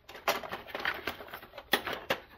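Hand-rummaging through a steel tool drawer: metal tools clicking and rattling against each other and the drawer as they are shifted about. It comes as an irregular string of small clicks, with a sharper click near the end.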